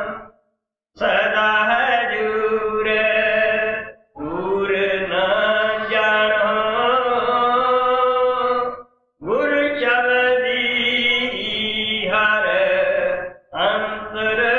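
Devotional chanting: a voice sings long, held phrases of about four seconds each, with short silent breaks between them.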